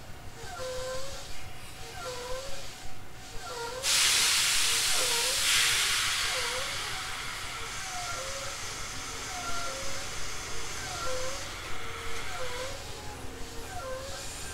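A sudden loud hiss of compressed air from a Tobu 800 series train about four seconds in, fading away over several seconds. A short chirping tone repeats about once a second throughout.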